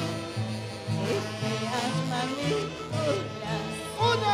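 Live saxophone band playing an instrumental tunantada passage: a saxophone melody over a bass line pulsing about twice a second.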